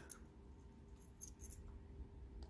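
Near silence: room tone with a few faint, light clicks a little over a second in.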